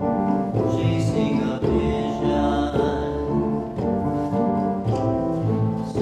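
A show tune from a stage musical: a male singer with a live band accompaniment that includes brass over a bass line moving in a steady rhythm.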